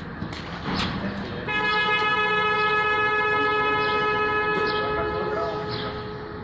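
A vehicle horn held in one steady blast of about four seconds, starting a second and a half in.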